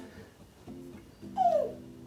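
A baby's short whiny vocal sound about one and a half seconds in, falling in pitch.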